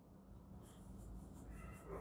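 Marker pen writing on a whiteboard: a faint run of short scratchy strokes starting about half a second in.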